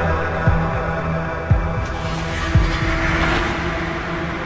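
Techno from a DJ mix: a deep kick drum thumps about once a second under steady droning synth tones, with a hissing swell rising and falling in the middle.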